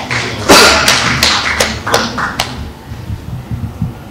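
Handling noise from a gooseneck microphone on a lectern being gripped and adjusted: a sharp click, then a quick run of loud, irregular knocks and taps over about two seconds, dying away for the last second.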